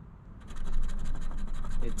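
A coin scratching the coating off a scratch-off lottery ticket: a rapid run of fine scrapes starting about half a second in.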